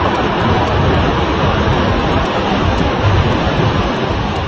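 Steady roar of Pacific surf breaking and washing over a rocky shore, a dense rushing noise with no pauses.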